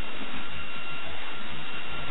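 Steady hiss of a noisy, narrow-band old recording, with a faint steady high whine running through it.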